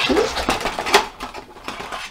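Plastic packaging crinkling and crackling in the hands as a clear plastic canopy part is taken out of its packet, with a few sharper crackles.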